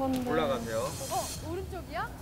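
Women talking, overlapping, through the played-back show's audio, with a hiss over the first half or so.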